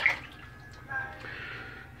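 Tap water running into a bathroom sink, faint and steady.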